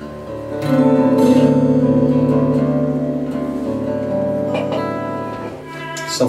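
Live acoustic band music: a chord sounds about half a second in, rings on for several seconds and fades near the end.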